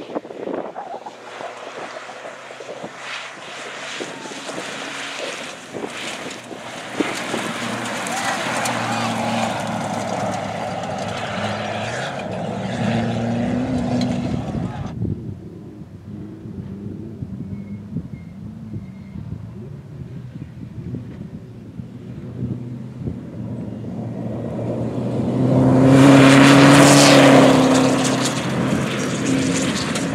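Volkswagen Amarok rally pickup's engine revving hard on a gravel stage, its pitch rising and falling, with dust-road and tyre noise. It drops back for a while, then swells to its loudest as the truck passes close near the end.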